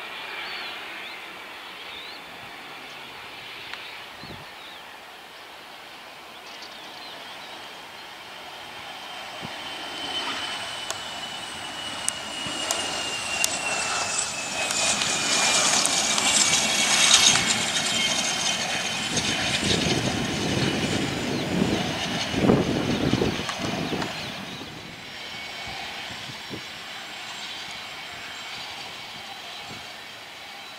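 Jet aircraft's turbofan engines whining as the aircraft passes. The sound grows louder to a peak about halfway through and then fades, and the high whine slides steadily down in pitch.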